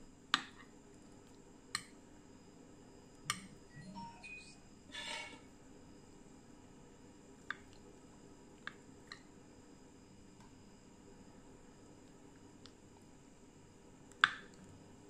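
A metal spoon clinking lightly against a porcelain plate while scooping soft agar pudding: about six sharp, isolated clicks spread over the first ten seconds, with a couple of brief softer scraping sounds around four to five seconds in.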